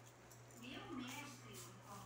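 A faint, indistinct voice murmuring briefly about halfway through, over a steady low hum; otherwise quiet.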